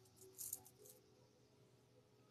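Near silence: room tone with a faint low hum, and a few faint brief clicks or rustles about half a second in.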